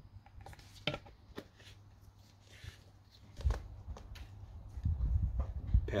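Snow foam lance being fitted and screwed onto a plastic bottle: scattered plastic clicks and knocks, with low rumbling handling noise in the second half.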